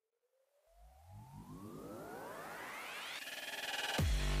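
Synthesized rising sweep: several tones glide upward together and grow louder over about three seconds. Near the end it levels off into a steady pulsing texture, the build-up into electronic background music.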